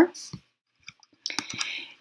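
A few short, quiet computer mouse clicks with gaps between them.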